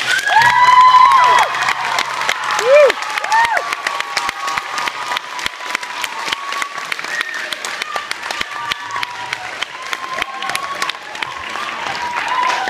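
Audience applauding and cheering as a song ends, with several high whoops in the first few seconds over dense clapping. The clapping continues steadily with crowd voices mixed in.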